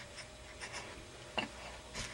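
Faint rustling with one small click about one and a half seconds in.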